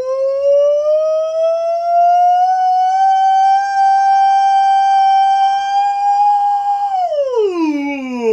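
A man singing a sustained 'oh' vocal glissando as a warm-up exercise, sliding up through his break into head voice, then holding a high note steady for about four seconds before gliding back down near the end.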